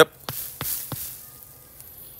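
A few sharp light knocks, about three a second, from kicking the base of a young Flavor Grenade pluot tree to shake its small excess fruitlets loose, thinning the fruit.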